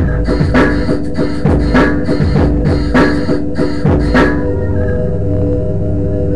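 A home-made electronic beat playing back: programmed drum-kit hits, kick and snare, over synth backing. About four seconds in the drums drop out and a held chord keeps sounding.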